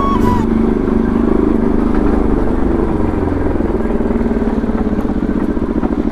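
Bajaj Pulsar NS200's single-cylinder engine running at low speed while being ridden. Its beat grows slower and more distinct toward the end. The tail of background music fades out about half a second in.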